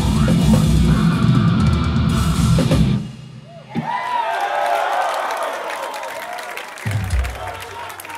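Death metal band playing loud with drums and guitar, stopping abruptly about three seconds in; the crowd then cheers and yells, with a single low thud from the stage near the end.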